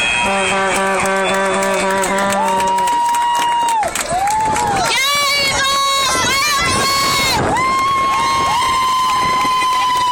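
Crowd of spectators cheering, with long drawn-out shouts held for a second or two at a time, each sliding up at its start and down at its end.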